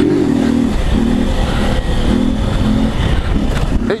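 A motorcycle engine running under way, its note coming and going in short spells as the throttle is opened and eased, over heavy wind rumble on the microphone.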